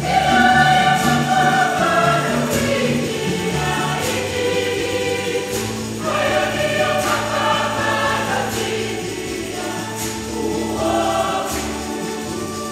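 Church choir of women singing a hymn in long, sustained phrases over a steady low accompaniment, with a light percussion stroke roughly every two seconds.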